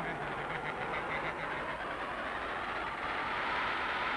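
Cartoon sound effect of an underground exploration (drilling) machine running: a steady, even mechanical noise with a faint hum, unbroken through the scene change.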